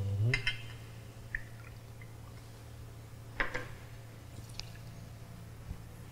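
Milk being poured into a mixing bowl, heard faintly as a few small liquid drips and glugs, with light clicks of kitchenware.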